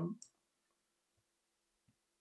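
Two faint computer mouse clicks, one about a second in and one near the end, over near silence with a faint steady hum.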